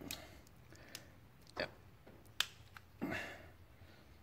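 Small flathead screwdriver tips clicking against a plastic wiring connector block as they pry at a plug's locking tabs, with a short scrape about three seconds in. The clicks are faint and irregular, and the plug has not yet released.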